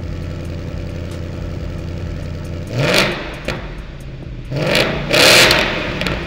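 Ford Mustang GT V8 with a Roush X-pipe resonator-delete exhaust, idling steadily and then revved twice: a short blip about three seconds in and a longer, louder rev about a second and a half later.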